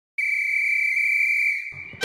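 A whistle blown in one long, steady blast of about a second and a half, fading out, with music starting near the end.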